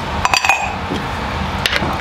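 Metal ladle clinking against a steel cooking pot of gravy. There is a quick cluster of clinks with a short ring about half a second in and another pair of clinks near the end, over a steady low background noise.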